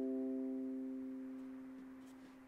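The last strummed chord of an Enya Nova U Pro tenor ukulele, resin-bodied and strung with EJ88 strings, ringing out and fading steadily away to near silence.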